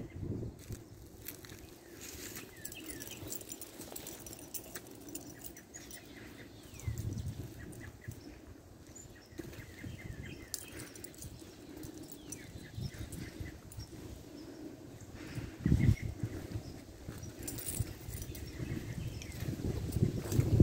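Footsteps crunching and rustling through dry leaves and twigs, with faint bird chirps now and then and a couple of louder low bumps, about seven and sixteen seconds in.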